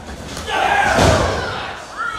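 A wrestler hitting the ring mat in a bump: one loud, deep boom about a second in, dying away over half a second or so, with voices over it.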